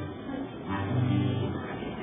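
Muffled, low-fidelity recording of acoustic guitars playing, with a few faint held notes.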